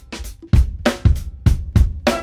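Drum kit played with sticks in a steady groove: bass drum and snare strokes at an even beat, the first coming about half a second in, over a smooth jazz backing track.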